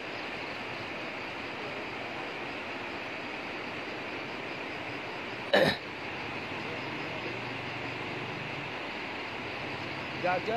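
Steady rush of muddy floodwater flowing through a landslide-hit valley. About halfway through there is one short vocal sound from a person nearby.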